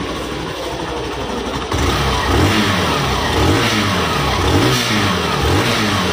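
Hero Glamour Xtec's 125 cc air-cooled single-cylinder four-stroke engine running through its new exhaust silencer. It idles at first, then is revved up and let back down several times from about two seconds in.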